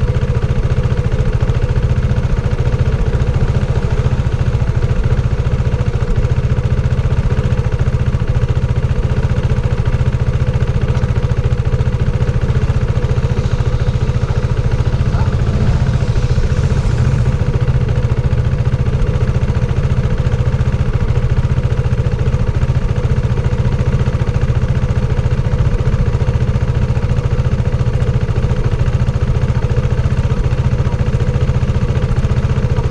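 Motorcycle engine idling steadily. Another motorcycle passes faintly around the middle.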